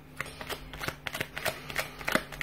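A tarot deck being shuffled by hand: a quick, irregular run of card slaps and riffling clicks that starts a moment in.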